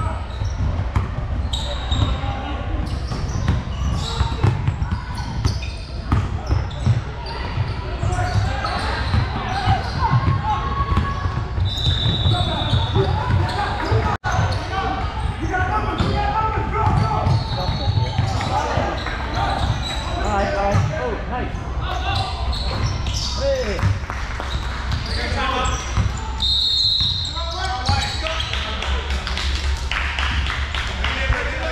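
Youth basketball game sounds in a large gym: a basketball bouncing on the hardwood floor and footwork on the court, with indistinct voices of players and spectators echoing in the hall. The sound cuts out for an instant near the middle.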